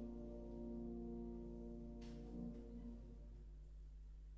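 Violin and 1870 Baptist Streicher grand piano holding a final chord that fades away, dying out a little past three seconds in. A brief soft noise about two seconds in.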